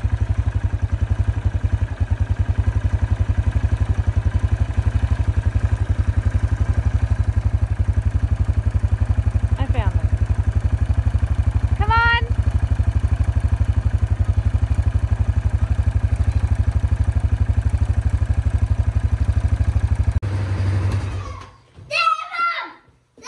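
Quad bike (ATV) engine running steadily as it is ridden, with a fast even low pulsing, then winding down and stopping near the end. A voice calls out briefly twice around the middle.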